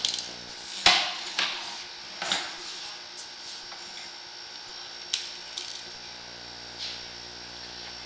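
Sewer inspection camera and its push cable being fed into a four-inch cast iron cleanout. Irregular sharp clicks and knocks, the loudest just under a second in, sound over a faint steady electrical hum.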